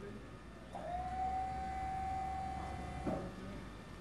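Removal truck's electric tail-lift pump running: a steady whine that rises briefly to its pitch about three-quarters of a second in, holds for a little over two seconds, and stops with a short knock.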